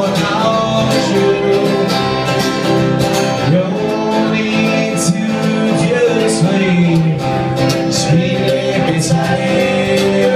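A small acoustic Americana band playing live: strummed acoustic guitars and a fiddle, with a voice singing over them.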